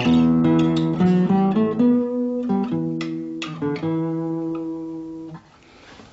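Classical guitar played in a warm, cello-like tone: a slow phrase of plucked notes in the low-middle register, each left to ring, ending about five and a half seconds in.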